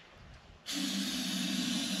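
Aerosol can of starting fluid sprayed in one steady hiss lasting about a second and a half, starting just over half a second in. It is being sprayed into the air intake, with the filter element pulled, to get a diesel tractor that has lost its fuel prime to fire.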